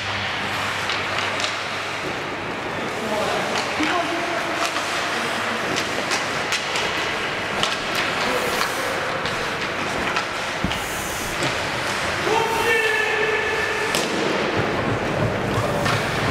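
Ice hockey game sound in an indoor rink: a steady wash of skating noise with frequent sharp clicks and knocks of sticks and puck, and scattered voices. A long held pitched call sounds about twelve seconds in.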